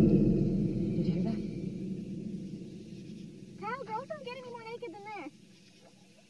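A low rumble that fades away over the first few seconds, then, about three and a half seconds in, a wavering, pitched vocal sound from a person's voice lasting about a second and a half.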